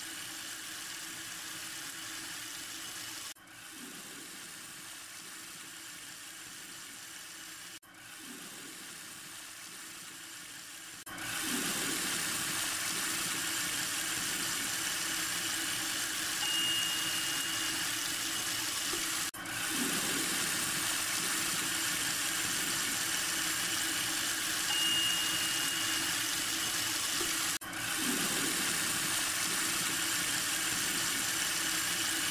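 Steady rush of water in a sink, with a low hum beneath. It breaks off briefly several times and becomes louder and brighter about eleven seconds in.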